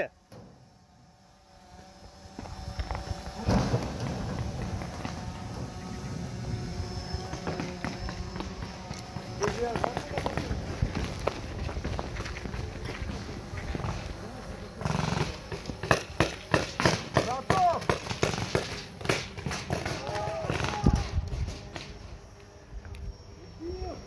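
Paintball markers firing: scattered single pops and quick runs of shots, thickest in the second half. Distant shouting voices and wind rumble on the microphone run underneath.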